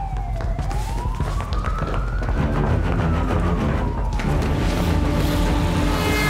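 A police siren wailing in slow sweeps: falling about half a second in, rising for about two seconds, then falling again. Dramatic music grows under it toward the end.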